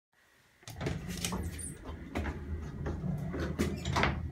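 A 1930s Staley single-speed traction elevator: a steady low hum with a run of sharp clacks and rattles, typical of its doors and gear working.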